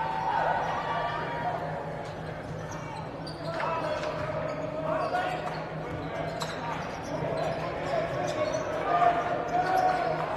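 Basketball being dribbled on a hardwood gym court, a string of irregular bounces, with sneakers squeaking and voices carrying in the large hall.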